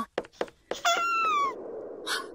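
A few short clicks, then a feverish baby's single crying wail about a second in that falls in pitch, followed by a faint steady hiss.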